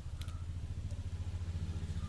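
A small engine idling steadily, a low hum with a fast, even pulse.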